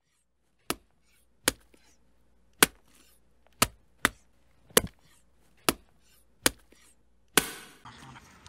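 About nine sharp knocks, unevenly spaced roughly a second apart, each short and cutting off quickly. After the last one, near the end, a steady background hiss comes in.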